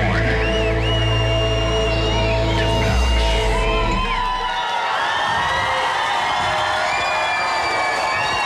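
Electronic dance track with a heavy bass beat that ends about four seconds in. A crowd then cheers and shrieks with whistles.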